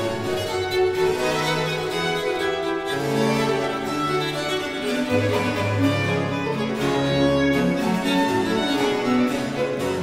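Baroque chamber ensemble of two violins, viola da gamba, cello and harpsichord continuo playing a fast Allegro movement in G minor. Busy violin lines run over a moving bass.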